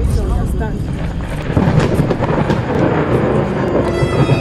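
Loud, continuous rumbling of thunder, with a voice shouting briefly in the first second.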